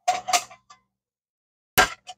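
Metal canteen cup being set down on a stainless steel tray: two quick clinks with a short metallic ring, then a lighter tap.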